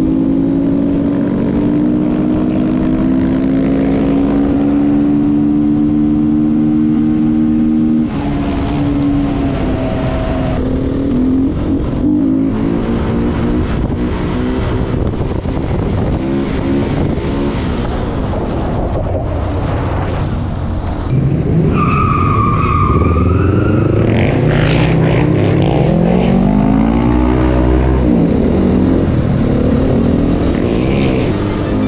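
Enduro motorcycle engine running at steady road speed, with sudden jumps between riding clips. Briefly, about two-thirds of the way through, there is a wavering high tone. Near the end the engine revs up through rising pitches.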